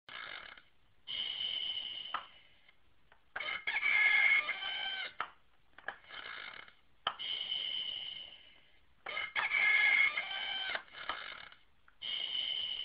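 A high-pitched voice making a string of drawn-out squealing calls, each half a second to two seconds long, with short breaks between them. The pitch stays fairly level within each call.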